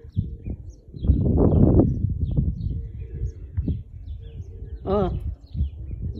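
Faint, scattered short chirps from birds feeding on the ground, with a burst of low noise about a second in and a brief voice sound near the end.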